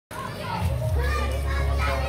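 Voices of children playing and calling out in the background, over a steady low rumble.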